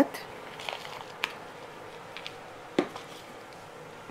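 Potting soil being scooped and tipped into a small plant pot: a soft trickle of soil with a few light clicks and taps from the hand scoop.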